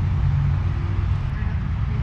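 Steady low outdoor background rumble, with no single distinct event standing out.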